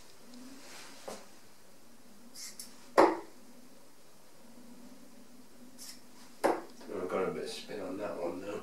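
Two 23 g tungsten steel-tip darts thudding into a dartboard, one about three seconds in and a second, quieter one some three and a half seconds later.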